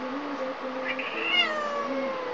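Domestic cat giving one drawn-out meow about a second in, falling in pitch, in answer to being called; the owner takes such meows for the cat talking back. A steady low hum runs underneath.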